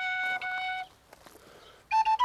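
Small wooden end-blown flute holding one long steady note that stops a little under a second in. After a short, near-silent pause, the next, higher note begins right at the end.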